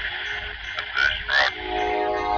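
A voice coming through a small radio speaker in short, clipped bursts, over background music with steady held chords that swell near the end.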